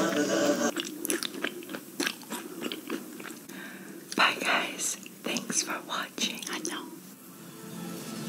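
Close-miked ASMR eating: crisp bites and chewing of ice cream treats, a string of sharp crunches, the loudest about four seconds in. A moment of music is cut off just under a second in.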